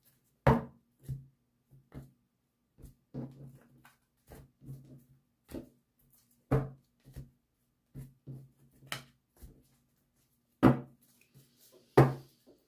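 Tarot cards being shuffled and handled on a tabletop: a string of short, irregular taps and clicks, about one or two a second, the loudest about half a second in, near the middle and near the end.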